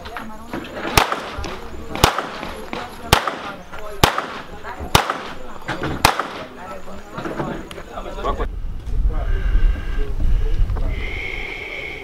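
Six pistol shots, evenly spaced about a second apart, a timed six-shot string of fire.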